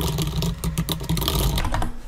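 Rapid typing on a computer keyboard, a dense run of irregular keystroke clicks over a steady low hum.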